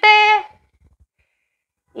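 A woman's voice finishing a spoken count, the word "siete", then near silence.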